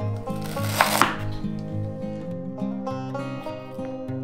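Kitchen knife cutting through fresh ginger root onto a wooden cutting board: two sharp chops in quick succession about a second in, over background acoustic guitar music.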